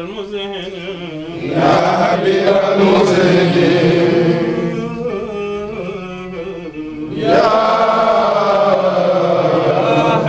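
A group of men chanting Arabic Sufi devotional verses together in long, drawn-out phrases. The chant swells about one and a half seconds in and again about seven seconds in.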